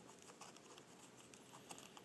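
Near silence, with a few faint light clicks and rustles as a paper towel pad is pressed into the bottom of a plastic vial.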